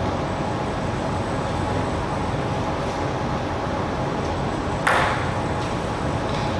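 Steady background noise of an indoor table-tennis hall, with one sharp knock about five seconds in.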